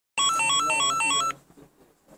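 Door intercom ringing: a rapid electronic trill of alternating high and low beeps that lasts just over a second and cuts off suddenly.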